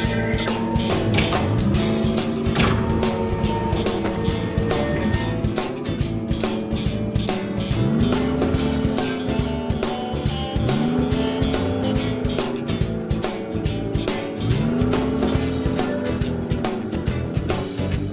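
Background music with a steady beat, over a cartoon engine sound effect for the toy truck. The engine sound rises in pitch and holds about four times: once near the start, then around the middle and twice more later on.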